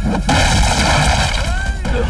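Film fight sound effects: a loud crash as a man's body smashes into a stack of wooden crates, then a dense, noisy rumble of breaking wood. A man's cry comes near the end.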